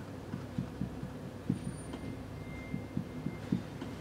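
Marker pen writing a kanji on a whiteboard: a run of soft, irregular taps as each stroke meets the board, with a faint thin squeak of the felt tip about halfway through.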